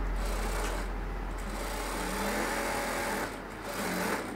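Industrial single-needle sewing machine stitching through layered denim. It runs steadily, pauses briefly about three seconds in, and starts again near the end.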